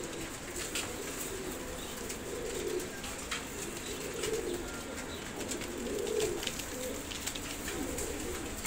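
Teddy pigeons cooing: a low, soft coo repeated about every two seconds, four times over.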